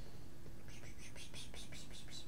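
A man whispering under his breath: a quick run of soft hissing syllables starting just under a second in, over a low steady room hum.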